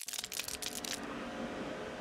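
A steady electric buzzing from equipment used to wash motorbikes, under a fast crackling title sound effect that stops about a second in.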